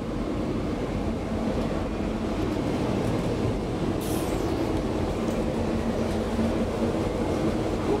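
A 1999 KONE inclined traction elevator cab travelling up its sloping shaft, heard from inside the cab: a steady rolling rumble with a low hum, and a brief hiss about four seconds in.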